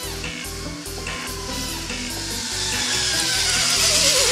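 Zip line trolley pulleys running along a steel cable: a hiss that grows steadily louder as the rider approaches, with a faint whine falling slowly in pitch. Background music plays underneath.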